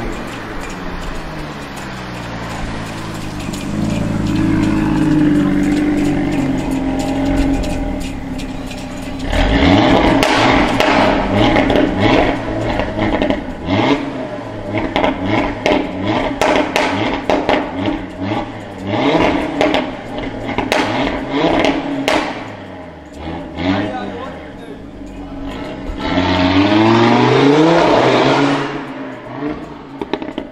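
Audi RS3 8V Sportback's turbocharged five-cylinder engine through Audi's factory sport exhaust, revving hard. It rises in pitch as the car pulls, then gives a long run of revs with sharp crackles under a concrete underpass, and a rising pull away near the end.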